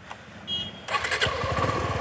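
Suzuki V-Strom SX 250's single-cylinder engine started with the one-touch starter button: it catches about a second in and settles into a steady idle.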